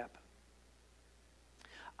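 Near silence with only faint room tone, after the last word of a man's speech trails off at the very start; near the end a faint breathy sound comes just before he speaks again.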